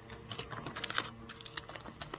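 Foil food pouches crinkling as they are handled: a quick, irregular run of sharp crackles, the loudest about a second in.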